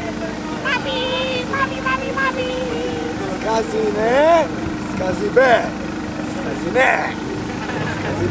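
Wordless voice sounds that slide up and down in pitch in several short arcs, over a steady droning hum.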